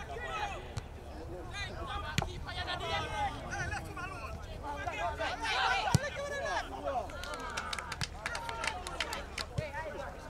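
Voices of players and onlookers calling out and talking across an outdoor football pitch. A sharp knock of a football being kicked comes about six seconds in, with a smaller knock about two seconds in.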